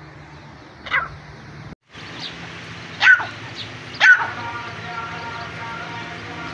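Young francolins calling: three short, sharp calls about one, three and four seconds in, followed by a thin, steady cheeping. A brief gap of dead silence falls just before two seconds.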